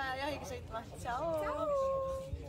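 Women's high-pitched voices calling a sing-song 'thank you, byeee!', the last word drawn out into a long, held note that slides in pitch before fading near the end.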